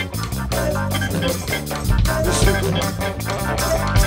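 A rock band playing live: electric guitar over bass guitar and drums, with a steady beat.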